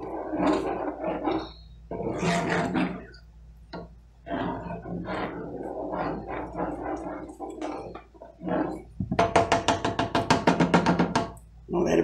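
Indistinct voice sounds, speech-like but without clear words. Near the end comes a fast, even run of pulsed vocal sound lasting about two seconds.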